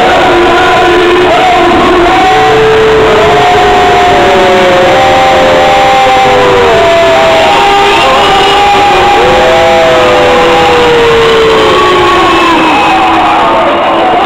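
Loud crowd noise at a fight event, with long drawn-out shouts or chanting voices over music. The din is dense and constant.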